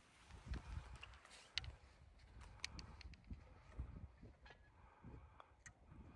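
Near silence: room tone with a few faint low bumps and soft clicks.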